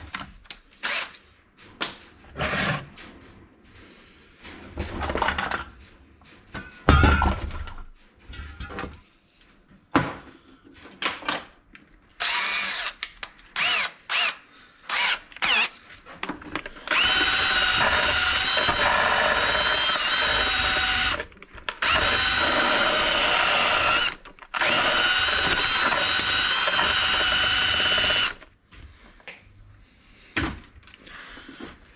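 Cordless drill spinning a brush bit in the exhaust port of a brush cutter's two-stroke engine. It is run in three long bursts with a steady whine after a short trigger pull, and those bursts are the loudest part. Before that come scattered clicks and knocks of tools and parts being handled.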